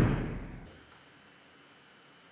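A door blown shut by the wind slams, its heavy boom dying away within about the first half second.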